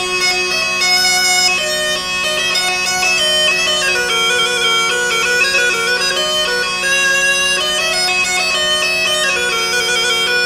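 Musette de cour, the bellows-blown French baroque bagpipe, playing a branle: a chanter melody moving note to note over a steady drone.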